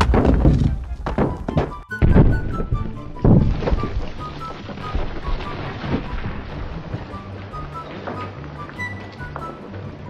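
Cartoon sound effects of a brick wall crumbling: a string of thuds as bricks tumble and land, heaviest in the first few seconds and thinning out after that. Under them runs background music with a light plinking melody.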